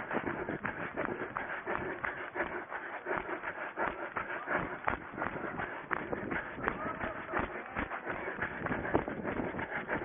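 A runner's footfalls and the swish of long dry grass against his legs, at a steady running pace, heard from a camera he is wearing.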